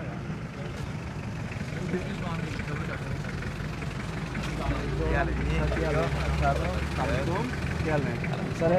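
Small Suzuki van's engine idling with a steady low rumble, growing louder about halfway through.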